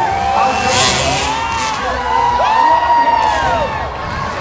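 Dirt bike engines revving, the pitch swelling up and falling back in sweeps about a second long, over crowd noise with a brief burst of cheering about a second in.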